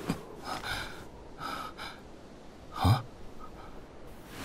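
A person breathing in short, sharp gasps, several in a row, the loudest about three seconds in.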